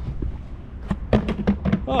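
A plastic traffic cone thrown onto tarmac, landing with a few clattering knocks about a second in.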